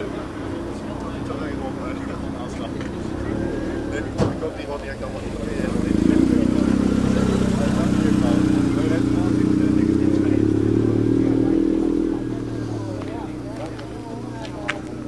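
A car engine running close by, getting clearly louder about five seconds in and holding steady until about twelve seconds in, then easing off. People talk in the background.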